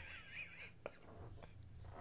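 Faint, breathy, almost silent laughter from a man, fading out in the first half second, then near silence with low room noise.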